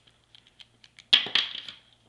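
Pliers cracking the plastic shell of a small headphone speaker: a few light clicks, then a sharp crack a little past a second in, with brief crackling as the plastic breaks apart.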